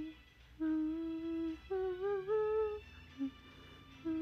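A young woman humming a tune with her lips closed: a few held notes of about a second each with short breaks between them, fading out near the end.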